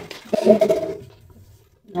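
A toddler's short wordless vocal sound, under a second long, about a third of a second in.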